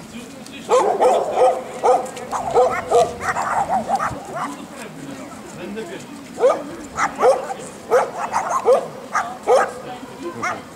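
A dog barking repeatedly in two bouts, a bark every half second to second, with a lull of about two seconds between them.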